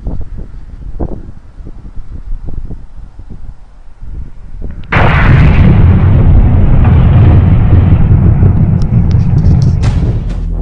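Wind buffeting the microphone, then about five seconds in a sudden, very loud, deep explosion-like rumble that holds steady until the end.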